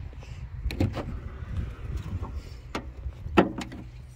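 Jeep Wrangler rear swing gate and flip-up rear glass being unlatched and opened by hand: a string of handle and latch clicks and knocks, the loudest a sharp clack about three and a half seconds in.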